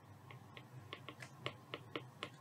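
Faint, irregular clicks of a pen stylus tapping and writing on a tablet screen, about four light ticks a second.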